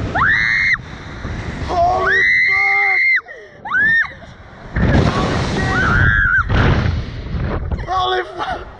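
Two riders on a slingshot reverse-bungee ride screaming as they are flung through the air: several long, high screams, with a loud rush of wind over the microphone from about five seconds in.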